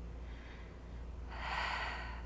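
A woman breathing hard, winded after a high-intensity set of mountain climbers. One long, noisy breath is heard about one and a half seconds in.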